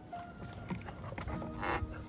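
Faint light taps and rubbing of a plastic mirror cap being handled and positioned on a car side mirror by gloved hands, under quiet background music.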